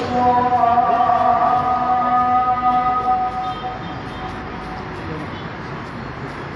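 A man's chanted Quran recitation holding one long drawn-out note, which fades away after about three and a half seconds into the murmur of the gathered crowd.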